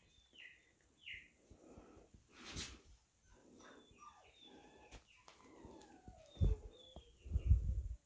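Barn owl begging for food with faint, short chirping calls that slide downward in pitch, one of them longer, and a few low thumps near the end.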